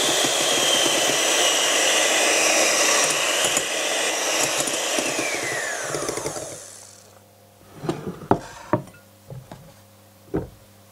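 Electric hand mixer whipping egg whites to meringue in a glass bowl, a steady whirr; about six seconds in it is switched off and its whine falls away. A few light clicks and knocks follow near the end.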